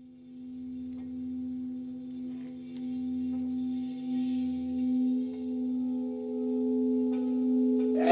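A steady drone tone with a few fainter higher tones above it, slowly swelling in loudness: an intro sound under a logo.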